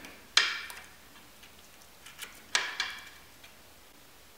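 Pebbles clacking against each other as a cat paws them out of a plant pot: a sharp clack about a third of a second in, then a few lighter clicks around two to three seconds in.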